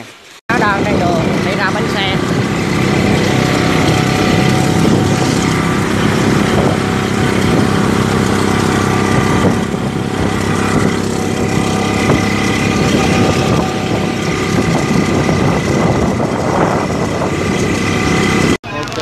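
Wind rushing over the microphone while riding a Honda Cub motorcycle on a wet road, with its small four-stroke single-cylinder engine running underneath. The noise starts abruptly about half a second in and stays loud and steady.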